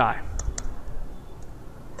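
Three light clicks from a computer's input devices, two close together near the start and one about a second later, after a short spoken word.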